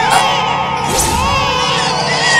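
Many infants crying at once, a dense chorus of overlapping, wavering wails.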